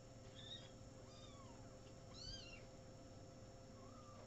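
Very young kitten mewing faintly: a few short, high, thin mews, the clearest a little over two seconds in.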